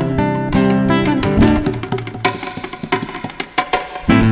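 Live instrumental music: acoustic guitar notes over hand-percussion strokes. The sound thins out in the second half and dips briefly just before the end.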